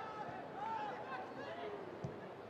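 Faint football stadium crowd noise during play, a steady murmur with scattered voices calling out from the stands.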